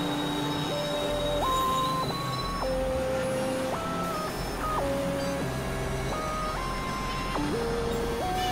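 Experimental synthesizer music: sustained pure tones jumping abruptly from pitch to pitch every half second to a second, over a low drone and a steady high whine.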